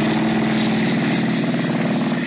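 Propeller airplane engine running as the plane takes off, a steady drone, heard as a radio-drama sound effect on an old broadcast recording.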